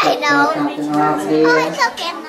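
Children's voices talking over one another, with other voices holding steady pitches underneath.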